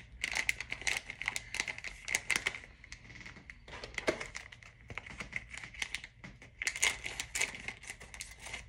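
Plastic packaging crinkling and rustling irregularly as it is handled and opened to get out a lipstick.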